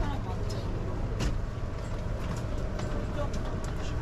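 Airport terminal ambience: a steady low rumble with indistinct background voices and a few scattered clicks.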